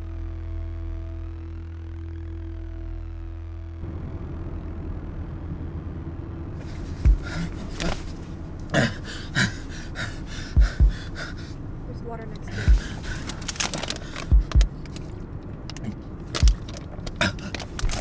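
A low steady drone that cuts off suddenly about four seconds in. It is followed by a noisy, scuffling stretch with many irregular sharp knocks and low thumps, and faint voice-like sounds among them.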